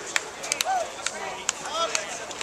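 A string of sharp, irregular cracks, about seven in two seconds, over shouting voices.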